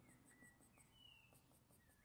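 Near silence: room tone with a few faint, short high chirps.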